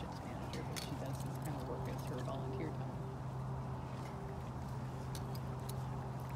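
A tiger eating meat from feeding tongs through a wire cage: scattered clicks and light knocks as it licks and takes the meat, over a steady low hum.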